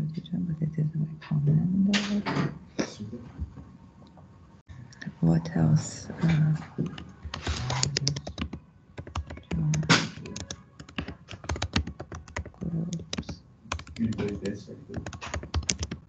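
Typing on a computer keyboard: runs of quick key clicks, densest in the second half, with low voices talking now and then in between.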